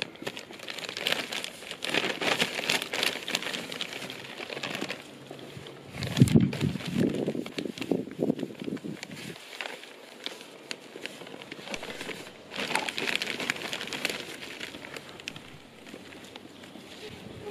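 Plastic sack of mulch crinkling and crackling as it is cut open with scissors and handled, with rustling as handfuls of the mulch are scooped out and spread over the soil in a planter.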